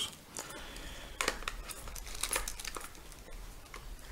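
Hands handling items in a zippered fabric pencil case: irregular crinkling and rustling with scattered light clicks.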